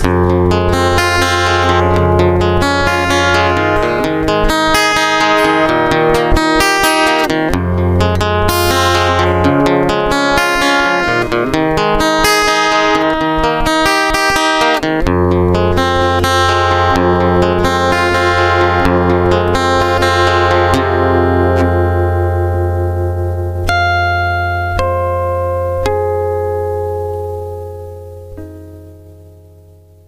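Instrumental close of a song: guitar picking over a steady low bass. The playing thins out about twenty seconds in to a few last ringing notes, then fades away at the end.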